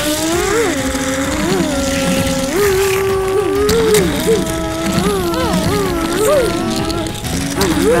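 Two people making revving "vroom" engine noises with their voices, one higher and one lower, in quick rising swoops and held tones while racing toy cars along plastic track.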